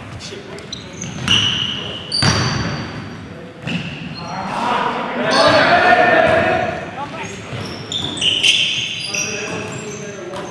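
Live basketball play in a gymnasium: a basketball bouncing on the hardwood floor with several sharp thuds, sneakers squeaking in short high chirps, and players' voices, all echoing in the large hall.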